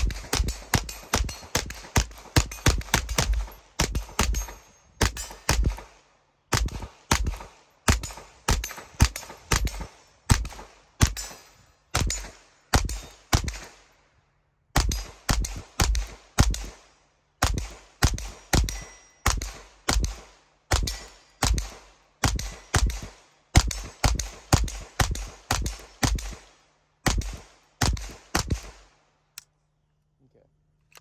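Standard Manufacturing Jackhammer .22 LR direct-blowback semi-automatic pistol firing CCI Mini-Mag rounds from a 50-round drum, shot after shot at about two a second with two short pauses. The firing stops near the end when the drum runs empty, the whole drum having fed and fired without a stoppage.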